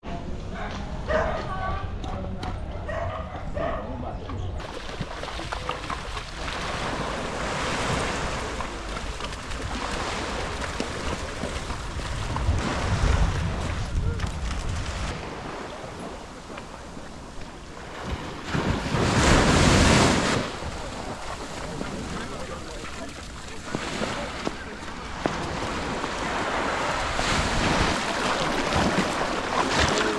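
Sea surf washing on a beach, with wind buffeting the microphone. The noise runs steadily and swells to a loud surge about two-thirds of the way through.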